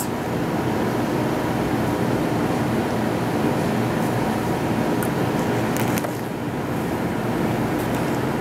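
Steady indoor background noise with a low hum, as of ventilation or refrigeration machinery, with a few faint clicks about five and six seconds in.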